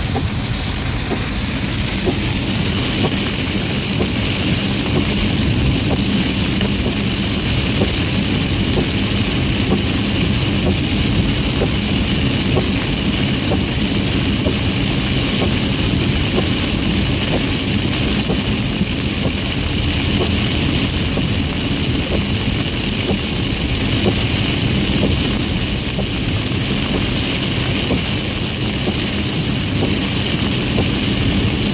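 Heavy rain beating on a car's roof and windshield, heard from inside the cabin as a steady wash of noise, with the tyres running through standing water on a flooded road and the engine underneath.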